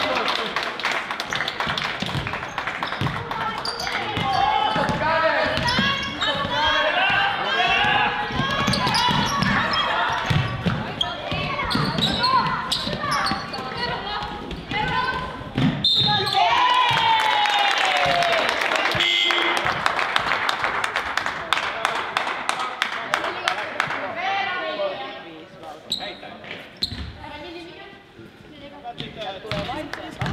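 A basketball bouncing on a wooden sports-hall court amid players' and spectators' shouts and calls, the voices dying down in the last few seconds.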